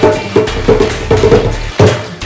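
Djembe hand drumming: a quick, uneven run of about six ringing strokes, the loudest near the end.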